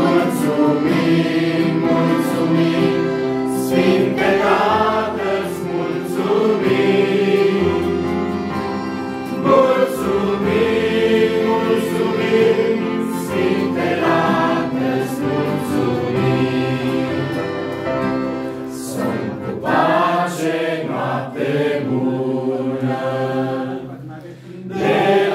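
A small group singing a Christian hymn together in Romanian, accompanied by a strummed acoustic guitar. The singing carries on steadily and drops briefly near the end.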